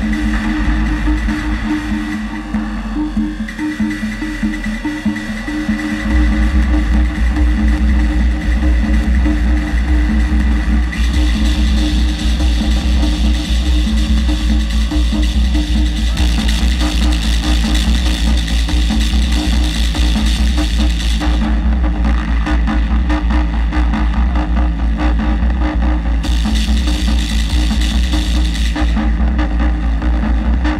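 Live experimental noise music from a modular synthesizer and keyboard, played loud through a PA: a heavy sub-bass drone under steady low tones. The bass thins out briefly and comes back full about six seconds in. A layer of high hiss enters about eleven seconds in, cuts off suddenly around twenty-one seconds and returns near the end.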